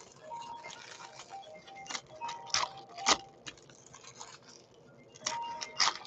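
Foil wrapper of a trading-card pack crinkling and tearing as it is ripped open by hand, in several sharp crackles, the loudest about halfway through and again near the end. Faint background music underneath.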